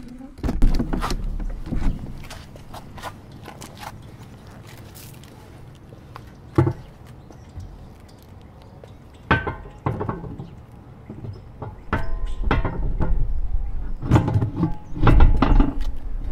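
Knocks and thumps of the VanDeny's white housing being handled and lowered over its mounting studs: several separate sharp knocks, with heavier low thumping near the start and again toward the end.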